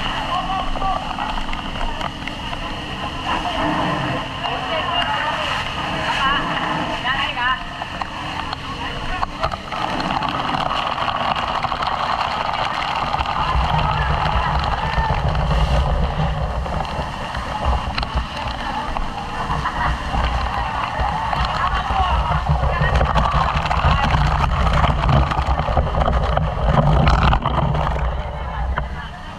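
Water spraying and splashing from fire hoses amid the shouting voices of a fire crew. A low rumble comes in about halfway through and keeps going.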